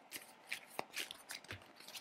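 A tarot deck being shuffled by hand: a quiet run of irregular card riffles and flicks.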